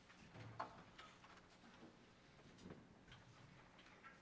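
Near silence: the hush of a concert hall, with faint scattered small clicks and one sharper click about half a second in.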